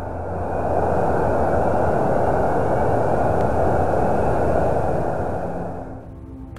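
Plasmaspheric hiss, an electromagnetic plasma wave from the cold plasma torus around Earth, converted into audio: an even, mid-pitched hiss that fades in over the first second and fades out near the end.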